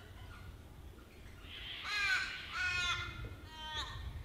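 A crow cawing three times in quick succession, each call sliding down in pitch, the first the loudest and the last near the end.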